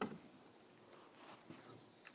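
Quiet outdoor ambience: a steady, high-pitched insect chorus, with faint footsteps on dry leaf litter.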